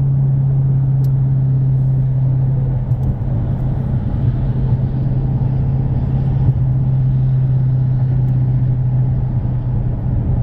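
Car cruising at freeway speed, heard from inside the cabin: a steady low engine drone with road and tyre rumble.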